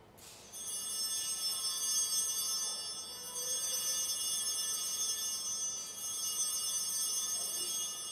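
Altar bells rung three times, each ring lingering into the next, marking the elevation of the consecrated host.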